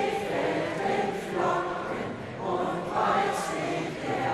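A large crowd of football fans singing a Christmas carol together in chorus, holding long notes that swell twice.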